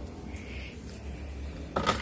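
Wardrobe doors being opened: a quiet stretch over a steady low hum, then one short, sharp clack near the end.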